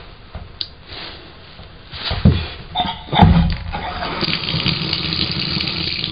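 Water starting to run from a bathtub spout as a freshly rebuilt Delta tub valve is turned back on, after a few knocks and clunks; the flow settles into a steady rush from about four seconds in.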